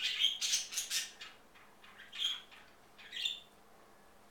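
Sun conure squawking: a quick run of harsh, high calls in the first second, then two single squawks about two and three seconds in.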